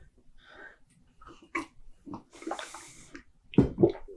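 A man drinking water from a glass: a few quiet gulps and a breathy exhale. Near the end comes a louder knock as he puts the glass down on the table.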